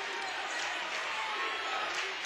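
Basketball game sound in a gymnasium: a steady crowd murmur with a basketball being dribbled on the hardwood court.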